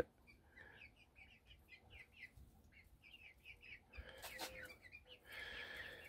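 Faint, scattered short high peeps from young chickens, with a few soft clicks about four seconds in and a slightly longer call near the end.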